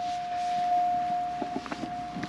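A steady electronic warning tone held at one pitch, with a few faint clicks about one and a half seconds in.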